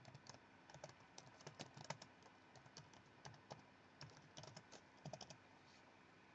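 Faint typing on a computer keyboard: irregular light key clicks, several a second, with a few short pauses.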